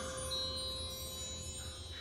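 Struck chime tones ringing on and slowly fading after a quick run of three strikes, with a faint high chime note coming in about a third of a second in. A low hum runs underneath.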